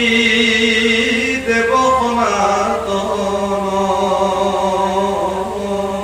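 A man's voice chanting a verse of the Bhagavata in slow, long-drawn notes: one note held for about two seconds, then a lower note held steadily for the rest.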